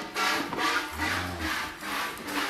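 Hand-milking a Holstein cow: milk squirting in streams into a metal bucket, a rhythmic hiss about twice a second.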